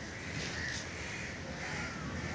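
Birds calling, a few short repeated calls over a steady outdoor background noise.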